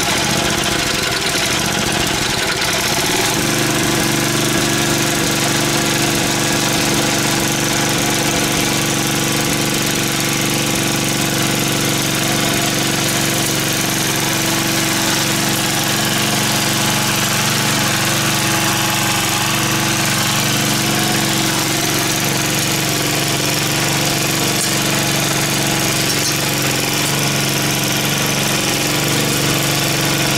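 Craftsman Eager 1 edger's small 3.8 hp Tecumseh single-cylinder engine running just after starting. Its speed wavers for about the first three seconds, then it settles into a steady run as the edger is pushed along the lawn edge.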